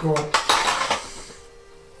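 Small cups and glasses clinking on a tray as they are set out on a table: two sharp clinks within the first half second, then the sound fades away.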